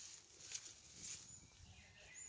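Faint outdoor field ambience with soft rustling and a short, high bird chirp partway through.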